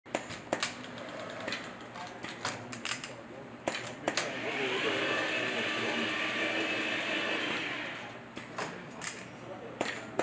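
Automated window-screen sealing machine at work: sharp clicks and knocks from its head as it moves along the frame, and a motor whirring for about four seconds in the middle that swells and then fades as the head runs and presses the mesh into the frame.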